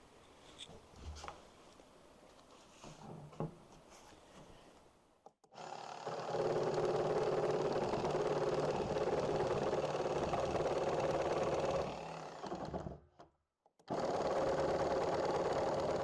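Corded Bosch jigsaw cutting through a plastic barrel, running steadily for about six seconds from five seconds in, stopping briefly, then cutting again near the end. The blade is at a slow speed and is bouncing in the plastic, the reason it is then sped up. The first few seconds are quiet apart from a few light handling knocks.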